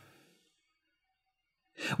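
Near silence, then a short intake of breath by a man near the end, just before he speaks.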